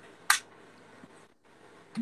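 A single sharp click about a third of a second in, over faint room tone, then a quick run of lighter clicks and handling noise near the end.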